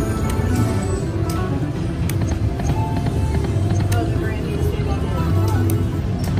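Eureka Blast video slot machine playing its game music and reel-spin sound effects, with a scatter of short clicks.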